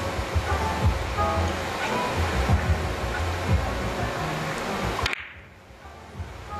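Three-cushion carom billiards shot: the cue striking the cue ball and a few sharp ball-on-ball clicks, over a steady music bed. The background drops away suddenly near the end.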